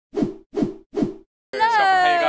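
Logo-intro sound effects: three short swooshing hits about 0.4 s apart, then, about one and a half seconds in, a loud held tone that slides slowly down in pitch.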